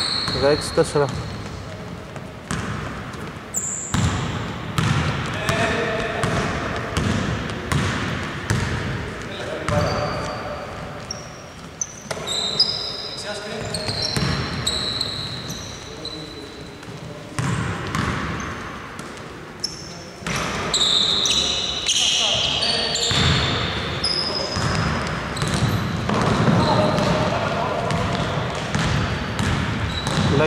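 Sounds of a basketball game on a hardwood court in a large hall: a ball bouncing on the floor, short high sneaker squeaks, and players' voices calling out.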